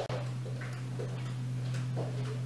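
Steady low electrical hum, with a small click at the start and a few faint soft ticks as a wooden lip pencil is handled and touched to the lips.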